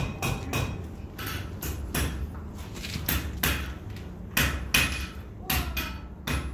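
Blacksmith's hammer striking hot iron on an anvil, a steady run of blows about two a second, some with a short ringing note. The iron has been fluxed with borax, which is spattering off it as it is worked.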